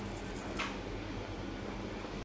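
Steady low electrical hum of a kitchen appliance running, with one faint soft tap about half a second in.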